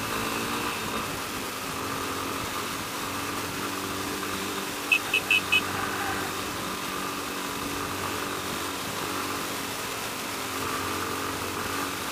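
Yamaha Ténéré 250 single-cylinder motorcycle engine running steadily at low speed, with wind and road noise. About five seconds in come four quick, high-pitched beeps.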